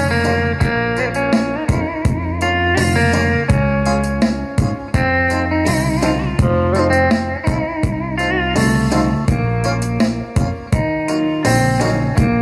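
Guitar-led bolero music playing through a pair of Aiwa SX-LMJ2 bookshelf speakers as a listening test, picked up in the room. Wavering lead notes run over a steady, full bass.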